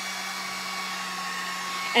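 Handheld craft heat gun blowing steadily, a constant fan whine and hum, drying wood stain on wooden blocks.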